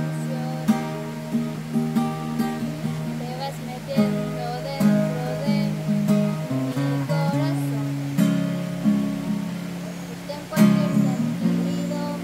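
Acoustic guitar strummed, its chords ringing and changing every second or so, with a harder strum about ten and a half seconds in.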